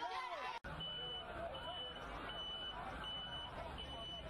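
Vehicle warning beeper, of the reversing-alarm kind, sounding a high beep about every three-quarters of a second over a low engine rumble and faint voices. It starts just after a brief drop-out about half a second in.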